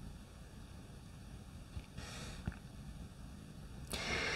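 Quiet room tone with a low rumble, a brief soft hiss about halfway through and small clicks, one just after the hiss and one at the very end.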